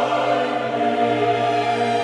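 Background choral music: a choir holding long, sustained chords, moving to a new chord about halfway through.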